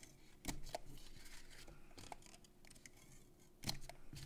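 Fast Fuse adhesive applicator being run along cardstock tabs: a faint scratchy rasp with a few sharp clicks, two about half a second in and one near the end.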